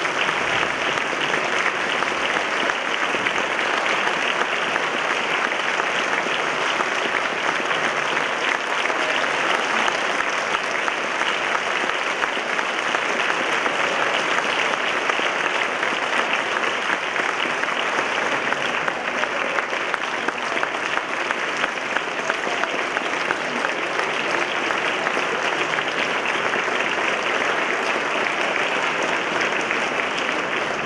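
A concert audience applauding steadily: many hands clapping at once in a dense, even clatter that holds its level.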